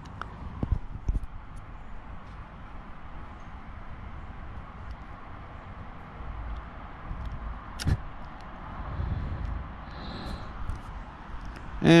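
A Redington fly reel being taken apart by hand, with its spool pulled out of the frame. There are a few faint handling clicks at first, then one sharp click a little past the middle as the spool comes free, over steady background noise.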